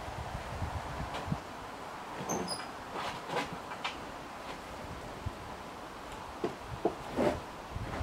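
Irregular knocks and scrapes of a wooden roof truss being pushed and worked into place on a timber frame, grouped about three seconds in and again near the end.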